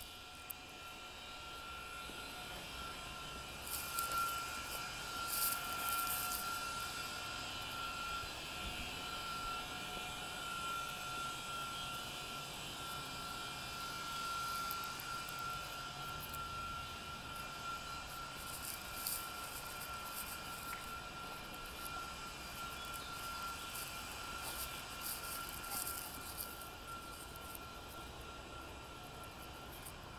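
A steady mechanical whine holding one high pitch over a constant hiss, with a few light clicks.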